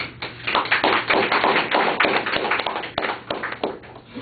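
Small audience applauding: a dense run of hand claps that picks up within the first second and dies away just before the end.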